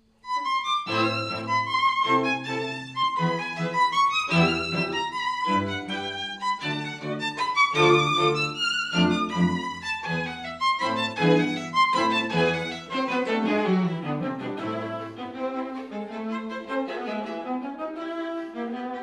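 A string quartet playing: violins over viola and cello. It starts abruptly just after the start with a run of separately bowed notes and chords, and near the end moves into smoother, falling lines.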